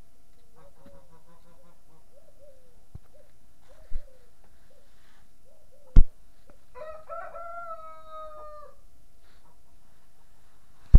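Chickens clucking in short notes, then a rooster crowing once for about two seconds, starting about seven seconds in. Two sharp knocks, about four and six seconds in, the second the loudest sound.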